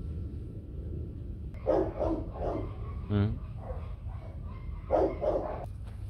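Dogs barking in two quick runs of short barks, one starting about a second and a half in and another near the end.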